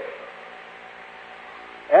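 A pause in a man's preaching: the steady hiss and faint hum of an old live recording, with his voice resuming right at the end.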